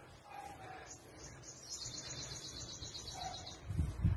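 A bird's high, rapid trill lasting about two seconds in the middle, over faint background; a low thump near the end.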